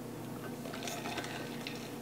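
Quiet sipping from an insulated stainless steel tumbler, with a few faint small clicks as it is handled.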